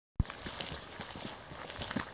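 Footsteps of people walking on a dirt forest path, irregular steps over a background hiss, with a sharp knock just after the start.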